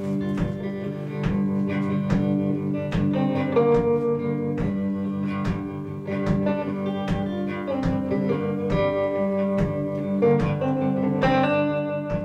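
Hollow-body electric guitar played through a small tube combo amp, picking an instrumental intro: a steady pulse of low bass notes about twice a second under ringing melody notes.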